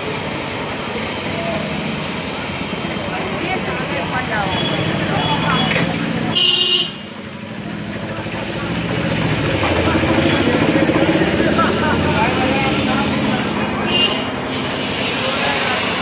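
Busy street ambience: many voices talking over vehicle traffic, with a short horn toot about six and a half seconds in and another near the end.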